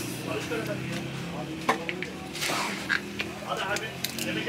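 A plastic squeeze bottle squirts mayonnaise in a few short sputtering spurts and clicks, over a steady murmur of background voices.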